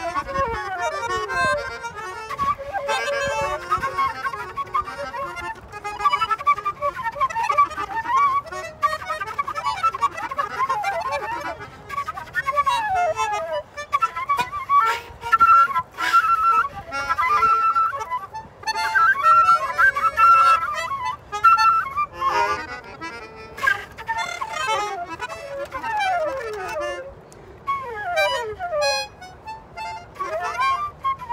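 Flute and melodica improvising together: fast runs and many sliding, swooping lines that overlap, with no steady beat.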